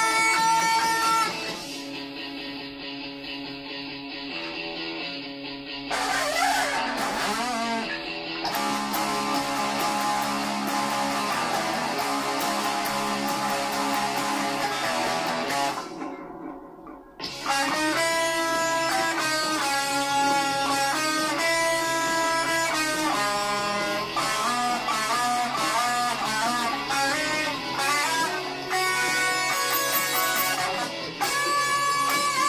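Electric guitar, Stratocaster-style, played fingerstyle as a lead melody, with pitch-bending notes a few seconds in. The playing drops away briefly about halfway through, then returns with a line of sustained single notes.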